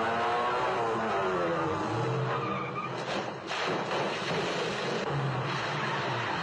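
Car engine running hard with tyres squealing in a long gliding screech over the first couple of seconds. A few sharp thuds follow about three seconds in, as tumbling metal drums hit the street.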